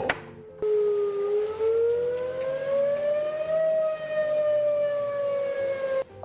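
Tornado warning siren wailing: one long tone that rises slowly in pitch over a few seconds, then falls slightly, growing louder about half a second in.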